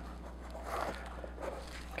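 Faint rustling and handling noises as a foam armour piece and foam spike are moved about in the hands, over a low steady hum.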